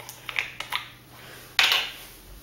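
A small plastic bottle of food colouring being picked up and handled on a counter: a few light clicks and taps, then a brief louder rustle about one and a half seconds in.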